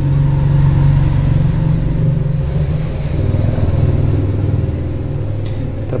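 A loud, continuous low motor rumble that swells and eases over several seconds, like an engine running nearby.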